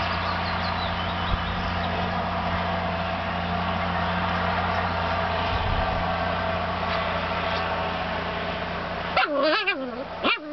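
A steady motor drone runs until about nine seconds in and then cuts off suddenly. Right after it, puppies playing give high, wavering yips and whines.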